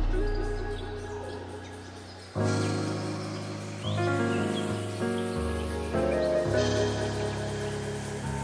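Background music: sustained chords that change every second or so. A deep bass note dies away over the first couple of seconds.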